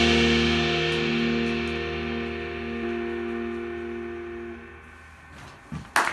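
A jazz quintet's final chord held and ringing out, several sustained notes fading away over about five seconds.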